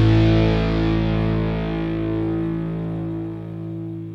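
A rock band's final chord, led by distorted electric guitar, held and ringing out as it slowly fades at the end of the song.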